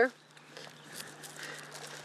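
Faint rustling of a cattail stalk and its leaves being handled, with a few light clicks, over a steady low hum.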